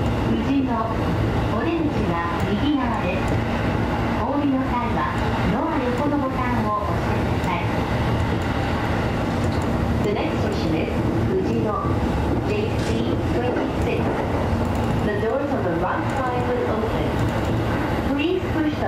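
JR East E233 series electric train running with steady motor and wheel-on-rail noise while coasting toward a station stop, heard from the cab. A voice speaks over the running noise at times.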